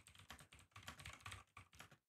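Faint typing on a computer keyboard: a run of soft, irregular key clicks.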